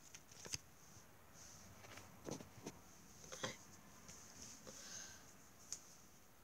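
Near silence with a few faint, short rustles and taps from sticker packets and stickers being handled.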